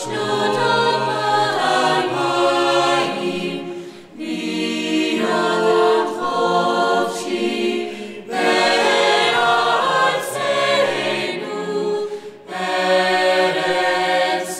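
A choir singing held chords, in phrases broken by short pauses about every four seconds.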